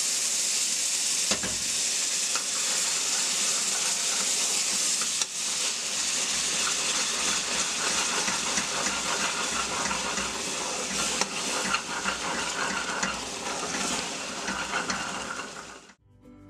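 Hot caramel hissing and bubbling in a stainless steel pot just after cream is poured into the amber sugar syrup, while a wooden spoon stirs it. The hiss eases a little as it settles, then cuts off suddenly near the end.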